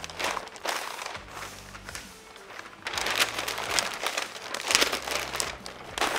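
Butcher paper rustling and crinkling as it is folded and pulled tight around a smoked brisket, in uneven spells of handling, louder about three seconds in and again near five seconds.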